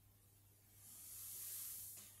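Near silence, then a faint soft rustle that swells and fades over the second half, from gloved hands and coat sleeves handling a small clockwork movement.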